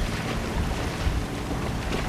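Water rushing and splashing past a sailing yacht's hull as it moves under way, with wind buffeting the microphone.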